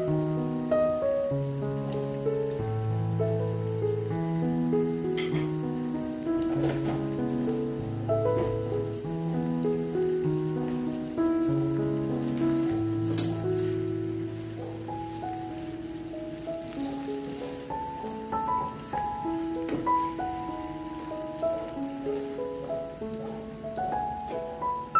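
Slow background piano music of long held notes over a steady rain-like hiss, with a couple of faint clicks.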